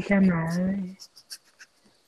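A woman's voice drawing out one syllable for about a second, then a few faint, short clicks.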